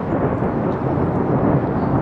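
Thunder rumbling, a long low roll that builds slightly in loudness.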